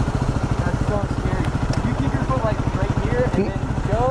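Motorcycle engine idling steadily, with a rapid even pulse.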